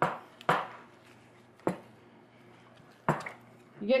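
A spoon knocking against a glass mixing bowl while stirring stiff biscotti dough: four sharp knocks at uneven intervals, each with a short ring.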